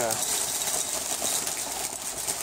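Cookie Crisp cereal poured from a plastic bag into a bowl: a steady rattle of small hard pieces landing in the bowl, with the bag crinkling.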